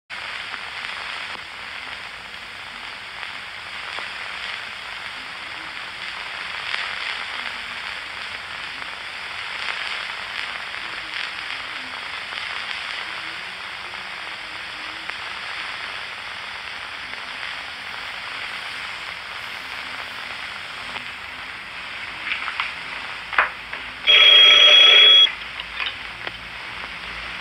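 Steady hiss and crackle of a worn early-1930s optical film soundtrack. Near the end come a few sharp clacks, then a loud, ringing telephone bell for about a second.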